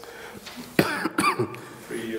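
A person coughing about a second in, in a room, followed by a brief murmur of voice.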